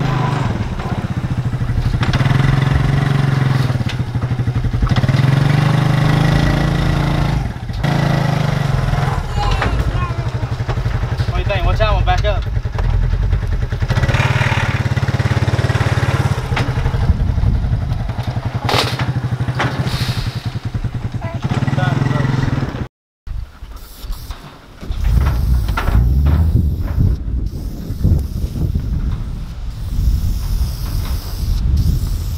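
ATV (four-wheeler) engine running and revving as it is driven up the ramp gate onto a utility trailer, its drone rising and easing off with the throttle. The engine sound cuts off suddenly about three-quarters of the way through.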